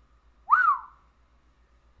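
A single short whistle from a man, sliding up and then down in pitch, lasting under half a second, about half a second in.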